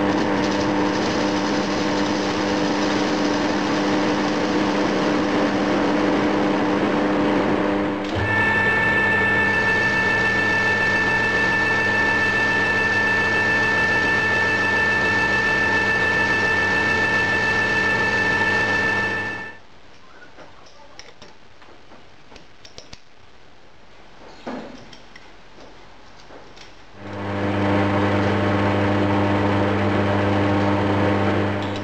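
Metal lathe running, turning a cast iron casting held in its chuck: a steady machine sound with several held tones. Its pitch shifts suddenly about eight seconds in. It stops about two-thirds of the way through, leaving only a few small clicks, and starts again near the end.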